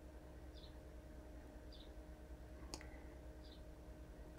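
Near silence: room tone with a low hum, a few faint short high sounds about a second apart, and one faint tap about three quarters of the way through, as a clear acrylic quilting ruler is laid on the fabric over the cutting mat.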